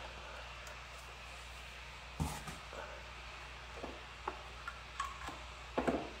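A few light, separate knocks and clicks as a wired mouse's cable is handled and pulled across a table, the sharpest about two seconds in.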